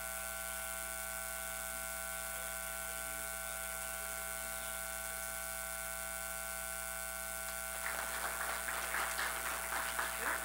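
Steady electrical buzz and hum, several high steady tones over a low mains hum, from the recording or sound system. About eight seconds in, an irregular patter of clicks and rustling starts over it.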